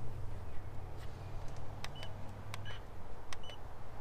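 Three short, high electronic beeps in the second half, among a few light clicks: the FPV radio and drone being set up for flight.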